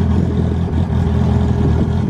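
Drag-race car engines idling loudly at the line, a deep, slightly uneven engine note.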